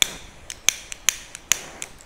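About eight sharp, irregular clicks and light knocks, the first the loudest: fishing rods, with their metal guides, tapping against each other and the tiled floor as they are handled.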